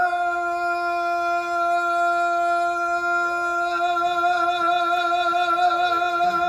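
A man's voice singing a cappella, holding one long high note steadily throughout, with a slight vibrato coming in during the second half.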